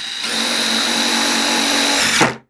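Ryobi impact drill running steadily, driving a galvanized self-tapping sheet-metal screw through a PVC tee fitting into PEX pipe. It gets louder about a quarter second in as he bears down and the screw's threads grab.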